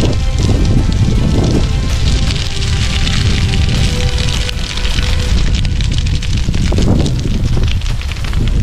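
Dry grass fire burning on a hillside, crackling steadily, with heavy wind rumble on the microphone.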